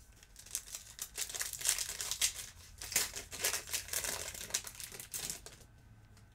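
Foil wrapper of a trading-card pack crinkling in the hands as it is opened, a dense irregular crackle that stops near the end.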